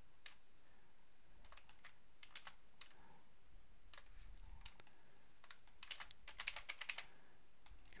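Faint, scattered clicks of computer keyboard keys being tapped, sparse at first and coming closer together in the last couple of seconds.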